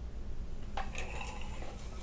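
Spinning wheel running while yarn is plied onto the bobbin: a steady low rumble, with a brief faint sound about a second in.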